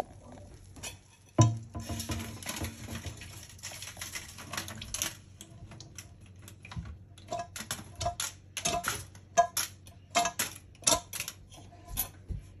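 Metal frying pan handled over a stainless steel sink while leftover cooking oil and burnt bits are emptied into a small aluminum-foil cup. There is a single knock about a second and a half in. Irregular light clicks and taps follow, coming thickest in the last few seconds.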